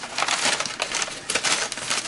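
Packing wrap crinkling and crackling as hands pull it off a wrapped item, a dense run of small sharp crackles.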